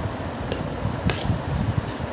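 Eating sounds: a steel spoon clicks against a plastic plate twice, about half a second and a second in, over close-up chewing.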